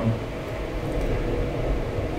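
Steady low background hum with even noise, like a ventilation or machine hum in the room.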